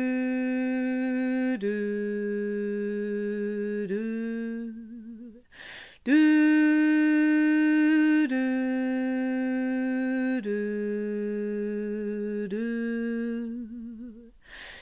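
A woman singing a low harmony line unaccompanied on a rounded 'doo': long held notes that step down and then lift slightly. She breathes in about five seconds in, then sings the phrase again.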